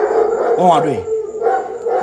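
A long, drawn-out howl-like vocal sound held on one pitch, with swooping falls and rises in pitch about halfway through and again near the end.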